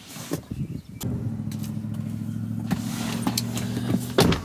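A car's electric window motor runs with a steady, even hum for about three seconds, starting about a second in. It follows a few short clicks and knocks.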